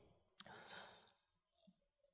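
Near silence: room tone through the lectern microphone, with a faint click and a soft breath about half a second in.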